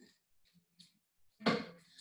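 A quiet room with a few faint clicks, then about one and a half seconds in a woman's voice sounds briefly and loudly before speech resumes.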